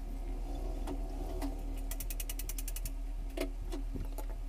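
A cooler motor's end cover and stator being fitted together by hand: light knocks as the parts meet, and a quick even run of about a dozen clicks near the middle.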